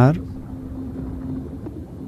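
A low steady hum with faint hiss under it, after the end of a spoken word at the very start.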